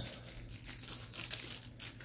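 Thin plastic penny sleeve crinkling as a trading card is slid into it, a quiet, continuous run of small crackles.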